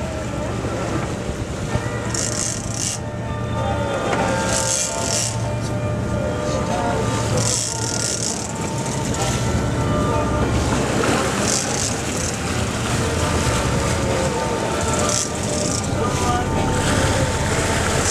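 Sportfishing boat's engines running steadily under the fight, with water rushing past the hull and brief hissing bursts every few seconds.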